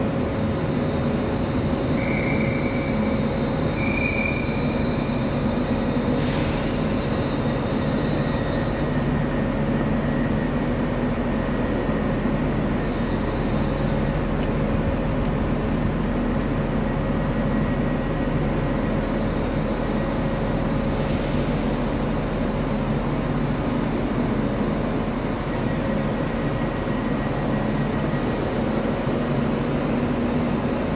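Passenger trains running at the platforms: a steady hum with a thin high whine through the first third, a sharp click about six seconds in, and short high hisses near the end.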